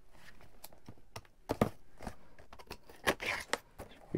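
Utility knife cutting through packing tape and cardboard along the edge of a shipping box: a run of irregular scratchy cuts and clicks, louder about one and a half seconds in and again about three seconds in.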